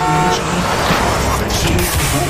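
A car driving past close by: a rushing whoosh that swells to a peak about a second in and then fades, over background music.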